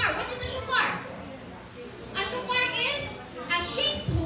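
Speech: a high-pitched voice talking in short phrases, with a brief quieter pause in the middle.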